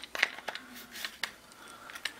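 Plastic gear cover of an RC truck being pressed into place over the spur and pinion gears: a few light clicks and taps in the first second or so, then quieter handling.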